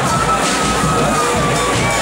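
Guggenmusik carnival band of brass and drums playing live in a hall, with the crowd cheering over it; a long high note sinks slowly in pitch.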